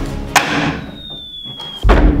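A thrown dart strikes a tabletop with a sharp click and bounces off. A thin, slightly falling tone follows, then a heavier thump near the end.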